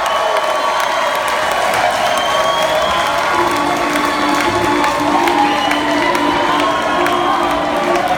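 Concert crowd cheering, shouting and applauding after the song ends, with a steady low hum from the stage joining about three seconds in.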